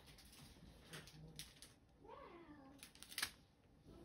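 A pet's single short call, rising then falling in pitch, about two seconds in, followed by a sharp click just after three seconds.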